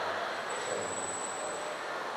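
Steady hiss of room noise in a hall, with a faint thin high whistle from about half a second in until near the end.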